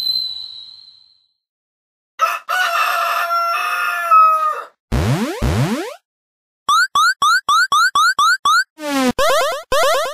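Cartoon sound effects in sequence. A ringing tone fades out, then a rooster crows for about two and a half seconds, then two quick falling whistle-like sweeps follow. After that comes a fast run of short rising blips, about five a second, and then a string of longer rising sweeps near the end.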